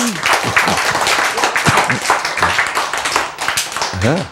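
Audience applauding: many hands clapping together in a steady, dense patter.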